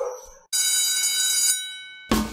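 A ringing, bell-like electronic tone with many high overtones starts suddenly about half a second in, holds for about a second, then fades away: a transition sound effect leading into the outro music.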